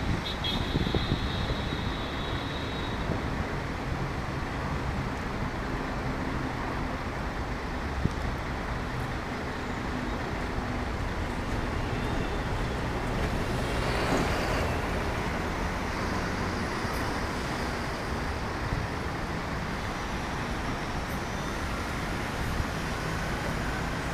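Steady city road traffic noise, with a high pulsing tone in the first few seconds and a louder swell of passing traffic about fourteen seconds in.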